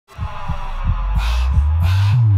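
Electronic intro sting: deep bass thumps about three a second over a low humming drone, with two whooshes about a second in and near the end.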